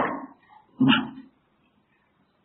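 Speech only: a man's voice trails off at the start, then says one short "nah" about a second in, followed by a pause.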